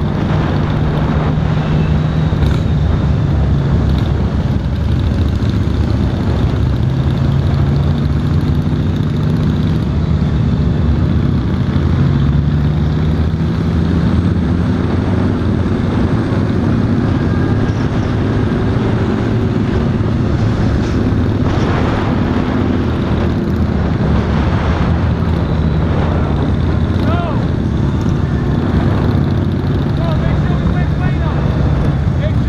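Honda Valkyrie F6C's flat-six engine running under way on the road, its pitch rising and falling gently with the throttle, among the engines of other motorcycles riding close by.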